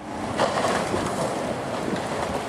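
Steady rushing noise of swollen, fast-flowing floodwater, swelling about half a second in.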